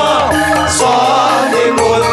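A group of men chanting a Javanese devotional song together into microphones, several voices at once holding long notes that waver and bend in pitch.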